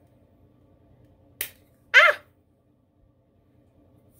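The lid of an e.l.f. Rose Gold eyeshadow palette clicking open once, followed about half a second later by a woman's short exclamation, 'Ah!', the loudest sound here.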